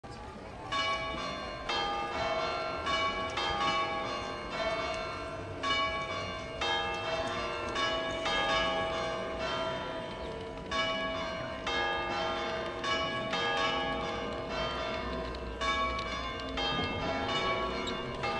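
Church bells pealing: several bells struck one after another at varying pitches, about two strokes a second, each note ringing on into the next.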